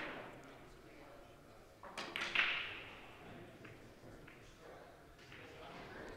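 Sharp clicks of billiard balls striking in a large hall with a short echo: one right at the start and a quick cluster about two seconds in.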